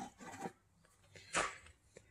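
A mostly quiet pause: faint soft handling noise near the start, then one short rush of breath-like noise about one and a half seconds in, just before the talking resumes.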